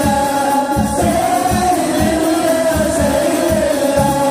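Voices singing together in a sustained, chant-like melody over a steady low drum beat of about three strokes a second.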